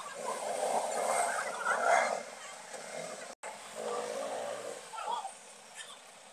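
A small motorcycle running as it is ridden slowly through a crowded street, mixed with street noise. The sound drops out for an instant about three and a half seconds in.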